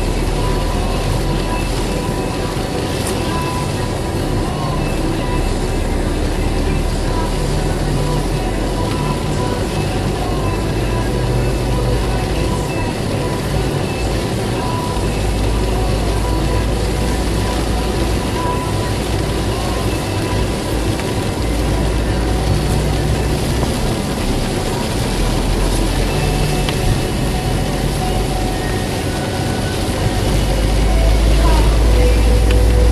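A car driving on a wet road, heard from inside the cabin: steady engine rumble that rises and falls, with tyre hiss on the wet asphalt.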